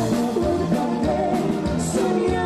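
Live Tejano band playing, with a female lead vocalist singing over a steady drum beat, guitar and keyboard.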